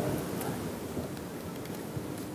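Room tone of a hall heard through a lapel microphone: a steady low hiss, with a faint click near the end.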